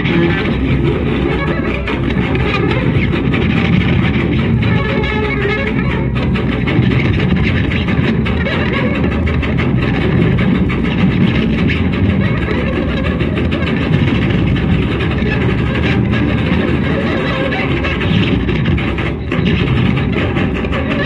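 Electric guitars playing live, loud and continuous, a dense wall of guitar sound with no breaks.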